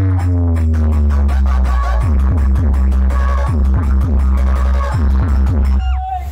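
Loud electronic dance music with heavy bass played through a large stacked-loudspeaker DJ rig ('power music' sound setup). A falling pitch slide fills the first two seconds, then a rhythm of dropping bass hits, about two or three a second, runs over steady percussion; the music cuts off suddenly at the very end.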